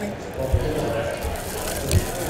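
Faint background voices talking, with two short low thumps from cards being handled on a table, one about half a second in and one near the end.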